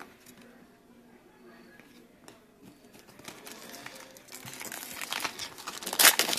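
Faint rustling and crinkling of a 2012 Gridiron football-card pack and cards being handled. It is very quiet at first and grows louder over the last few seconds.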